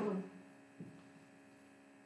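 A woman's voice trails off at the start, then a faint steady electrical hum remains, with one soft tick a little before a second in.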